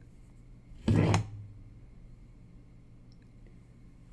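Quiet room sound broken by one short, loud noise about a second in, lasting a fraction of a second.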